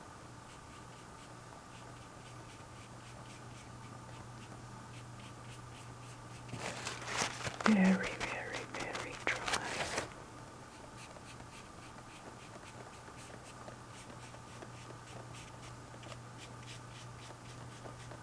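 Flat paintbrush stroking acrylic paint onto the painting: faint, repeated scratchy strokes over a steady low hum. From about six and a half to ten seconds in, a louder stretch of low, muttered speech rises over the brushing.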